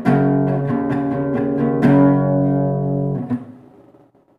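Acoustic guitar strummed in a few full chords, the last one left ringing and dying away near the end as the song finishes.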